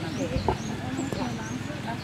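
Indistinct background chatter of several people talking, with a few faint, short high chirps.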